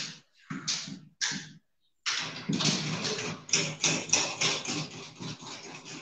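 Marker pen scratching on a white writing board as words are written out: a few short separate strokes, then from about two seconds in a longer run of quick strokes.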